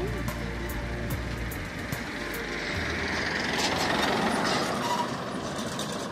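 A pickup truck passing by on the road: its noise builds to a peak about four seconds in, then fades. A short spoken phrase comes right at the start.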